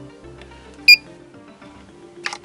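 Background music with steady tones, and about a second in a single short, loud, high-pitched electronic beep.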